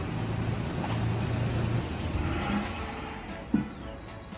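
Toyota Land Cruiser Prado 150's petrol engine running as the SUV creeps slowly forward into a tight garage. It is a steady low hum that fades out about two seconds in.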